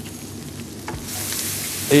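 Ground spices frying in hot oil in a pan: a steady sizzle that grows louder about a second in as they are stirred with a wooden spoon.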